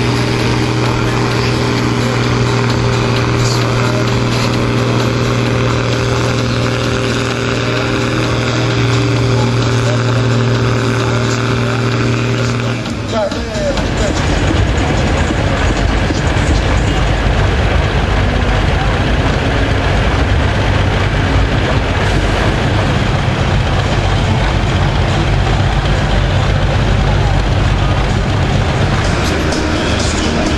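A Case International tractor's diesel engine holding a steady, unchanging note under full load while pulling the sled. About 13 seconds in it changes abruptly to a deeper, rougher rumble of several John Deere tractor engines running.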